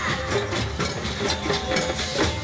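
Street-parade noise: drum strokes and music over crowd sound, with a steady low hum underneath.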